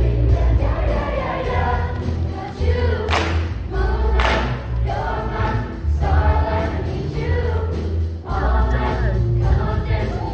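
Large mixed-voice show choir singing an upbeat number over accompaniment with a strong, pulsing bass beat. Two sharp hits cut through about three and four seconds in.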